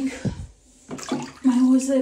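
Water sloshing in a plastic baby bathtub as a hand reaches in and lifts out the floating bath thermometer, about a second in.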